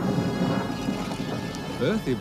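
Thunderstorm soundscape: deep rolling thunder rumble under a steady rain hiss, slowly fading.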